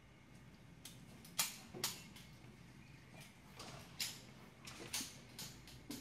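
Sharp, irregular reports from several .22LR semi-automatic target pistols firing in a rapid-fire series, about a dozen shots, some close together. The loudest pair comes early, with more spread through the rest.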